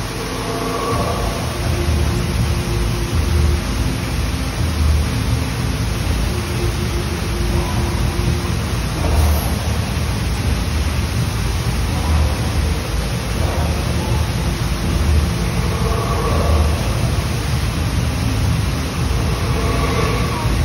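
Steady rush of water pouring down an artificial waterfall on a theme-park dark ride, with a deep rumble swelling about every second and a half beneath it.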